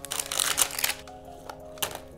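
Plastic wrapping and foil packaging of a Disney Princess Comics Minis blind canister crinkling as it is opened by hand, with quick crackles mostly in the first second and one more near the end.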